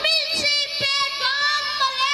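A high voice singing a melodic line, its pitch sliding up and down in continual arcs, heard over microphones.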